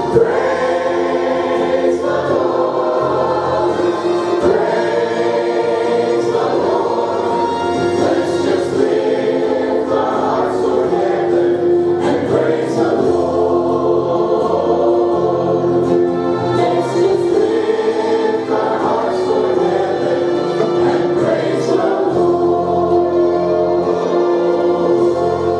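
Church congregation singing a gospel hymn together, with long held notes over accompaniment.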